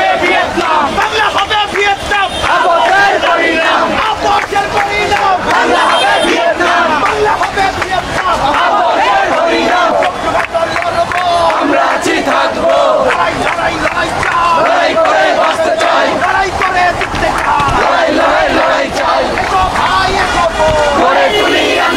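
A large crowd of protest marchers shouting slogans together, many voices overlapping without pause.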